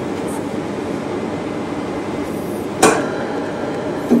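Steady, even hiss of the lab equipment around an opened epitaxy reactor, with one sharp click a little under three seconds in as the reactor's graphite heater is handled.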